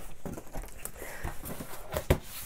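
Cardboard box flaps being pulled open by hand: light rustling and scraping of cardboard with scattered small knocks.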